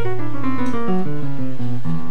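Live jazz piano trio playing: a run of single notes, each about a fifth of a second long, stepping steadily downward in pitch.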